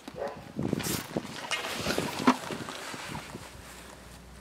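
Scattered light knocks and clatter of a plastic bucket of wet concrete being settled onto the metal pan of a spring dial scale. The noise dies down near the end.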